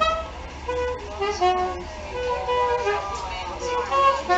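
Soprano saxophone playing a melody, moving note to note with some notes held.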